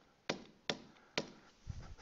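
Three sharp, faint taps of a stylus on a tablet screen while handwriting, followed near the end by a brief low, dull thump.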